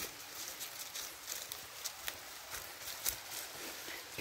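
Faint, irregular rustling and soft clicks in leafy undergrowth, with a few sharper ticks scattered through.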